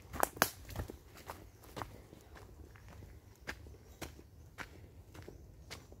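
Footsteps of a person walking over dry leaf litter and onto a dirt path, roughly two steps a second with a crunch on each. The two loudest steps come just after the start.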